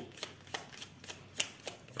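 A deck of tarot cards being shuffled by hand: a series of short, irregular clicks of the cards, with the sharpest one past the middle.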